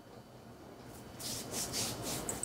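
A hand brushing over clothing: about four quick, soft rubbing strokes in the second half, after a second of near quiet.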